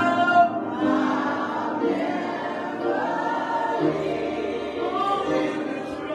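Small church choir singing a gospel song together, with one man leading on a microphone.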